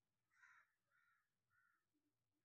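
Near silence, with three very faint short animal calls in the background, about half a second apart.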